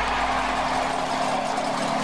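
Sound effect for an animated logo end card: a steady, shimmering hiss over a low, steady hum.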